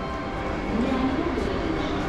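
Busy railway-station background: a steady hubbub with a low, wavering voice-like sound through the middle.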